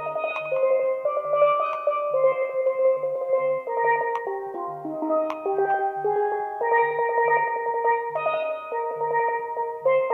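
Solo steel pan playing a melody, with many notes held as rapid rolls of stick strikes. A soft, regular low pulse of accompaniment sits underneath.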